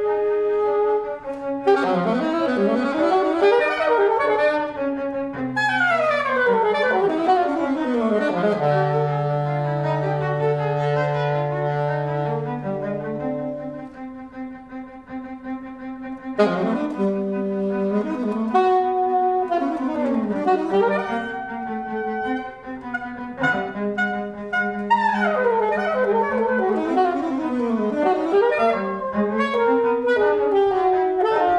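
Saxophone and violin improvising freely together, with pitched lines, long sliding glides in pitch and a long low held note. The playing thins to a quieter moment about halfway through, then both instruments come back in.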